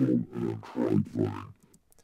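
Recorded dialogue pitch-shifted and distorted into a neurofunk-style bass, played back in short voice-like phrases through an LFO-swept morphing filter layered with an unfiltered copy: less and less like a voice and more like a modulated bass sound. It stops about one and a half seconds in.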